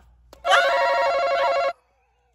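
A loud electronic ringing tone, like a buzzer or bell, starts about half a second in, holds steady for just over a second and cuts off suddenly. A voice exclaims over it.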